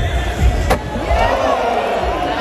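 Skateboard landing a flip trick over a handrail: one sharp clack of the board about two-thirds of a second in, then wheels rolling on the concrete as a crowd cheers.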